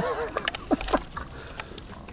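Brief laughter, then a few light metallic clicks as a loaded en-bloc clip is fitted into the open receiver of an M1 Garand rifle.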